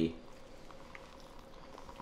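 Faint steady hiss of room noise, after the last of a spoken word at the very start, with one faint tick about a second in.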